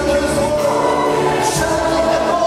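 A large mixed choir singing a Polish worship song in full voice, with sustained chords, accompanied by instruments.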